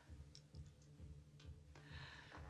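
Near silence: a few faint short clicks over a low rumble, with a hushed breath near the end.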